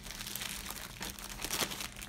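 Plastic packaging crinkling and rustling as a wrapped pack is handled and pulled from a cardboard box, with a few sharper crackles about a second in.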